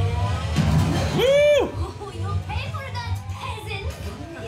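Cartoon soundtrack: background music under indistinct chatter and laughter. About a second in, one loud voice cry rises and falls.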